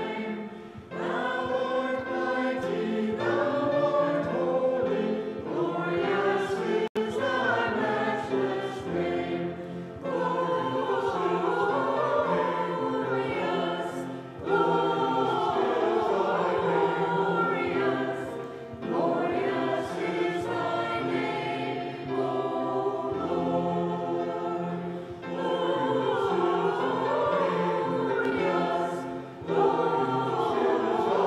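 Mixed church choir singing, in phrases broken by short pauses for breath. There is a very brief dropout in the sound about seven seconds in.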